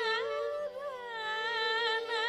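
Carnatic vocal music: a woman's voice sings a sliding, ornamented melodic line that bends up and down in pitch, over a steady tambura drone.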